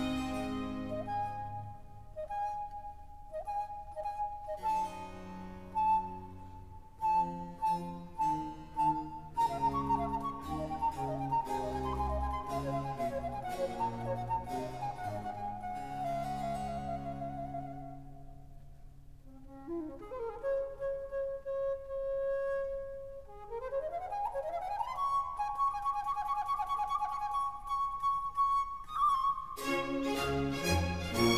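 Baroque flute playing a solo melodic line over harpsichord and low string continuo, with quick rising runs and then a long held, trilling note near the end.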